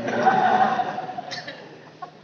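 Laughter from a group of people right after a joke, loudest at the start and dying away over about a second and a half.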